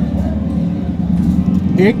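Background voices over a steady low hum, with a man saying a single word near the end.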